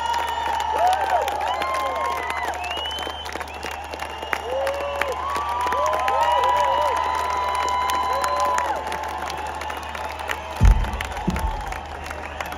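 Large concert crowd cheering and applauding, with many voices whooping and shouting in rising and falling pitches over steady clapping. A brief low thump comes near the end.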